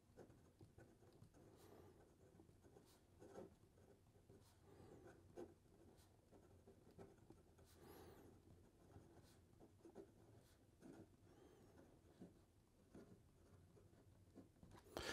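Faint scratching of a Narwhal Nautilus fountain pen's fine stainless steel nib moving across paper in short, irregular strokes, a nib with a fair amount of feedback.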